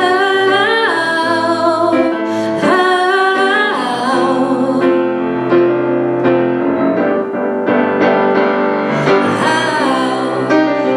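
A woman sings solo into a microphone over keyboard accompaniment, with long wordless runs that bend in pitch. For a few seconds in the middle the voice drops out while the accompaniment holds sustained chords, and the voice comes back near the end.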